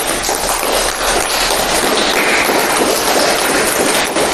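A room full of people applauding: the clapping breaks out suddenly and keeps up at a steady level.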